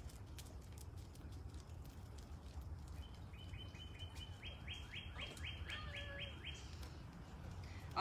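A bird calling: a faint run of short, quick, falling chirps, several a second, for about three seconds in the middle, over a steady low hum.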